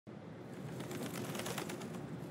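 Faint outdoor ambience with scattered light ticks.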